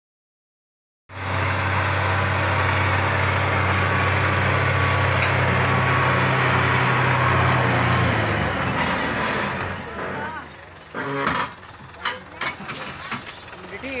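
Belarus tractor's diesel engine running hard and steady under heavy load as it strains to pull a stuck, loaded trolley; it starts about a second in and eases off after about eight seconds. Voices shout over a quieter engine near the end.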